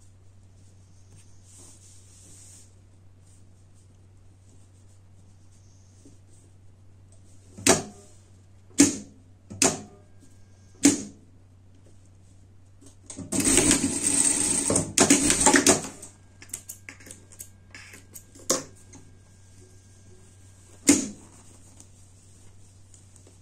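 An industrial straight-stitch sewing machine stitches fabric in two short, fast runs about two and a half seconds in total, a little past the middle. A few sharp clicks and knocks come before and after, from work at the machine, over a faint steady hum.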